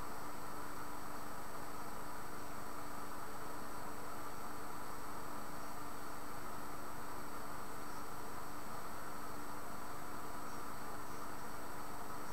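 Steady background hiss with a constant low hum and no distinct sounds: the recording's noise floor.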